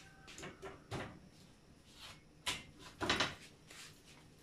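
A few short knocks and clatters, with some light rustling, from things being handled on a kitchen counter. The knocks come irregularly, two of them close together near the end.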